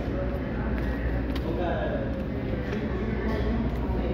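Restaurant dining-room background: indistinct voices over a steady low hum, with a few light clicks.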